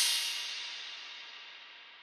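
A single crash cymbal sample with a long reverb tail, decaying steadily over about two seconds, its brightest top end dying away first.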